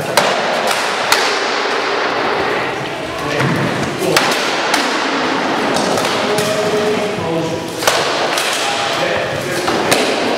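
Rattan swords striking wooden shields and helmets in armoured sparring: about half a dozen sharp cracks and thuds at irregular intervals, each ringing briefly in the hard-walled room.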